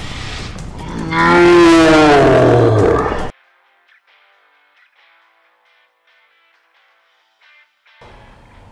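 A long, loud moo-like groan, its pitch sliding down toward the end, cut off suddenly about three seconds in. Faint plucked guitar music follows.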